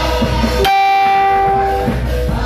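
Live gospel band music. About two thirds of a second in, the bass and beat drop out suddenly, leaving one bright sustained note held for about a second before the full band comes back in.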